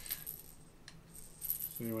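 A small fishing rattle on a catfish rig shaken by hand, giving a fast, high, jingling rattle that starts about a second in and grows busier. The rattle is there to add vibration noise in the water to draw catfish.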